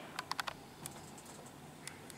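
A few light, sharp clicks inside a descending Schindler 5400 traction elevator car, over a faint steady background. A quick cluster comes a quarter to half a second in, one follows just under a second in, and another comes near the end.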